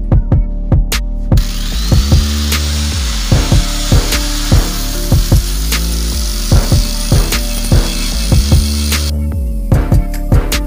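Angle grinder with a 100-grit flap disc sanding the lip of an aluminium car wheel. It spins up about a second in, runs steadily, and stops near the end. Background music with a steady beat plays underneath.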